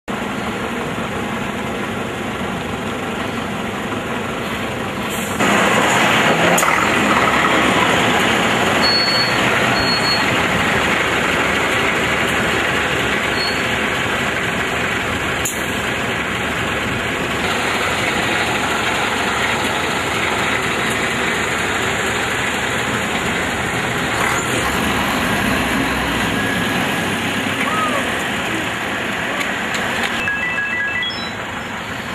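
Roadside traffic noise from a queue of cars and trucks: vehicle engines running and idling in a steady rush, louder from about five seconds in.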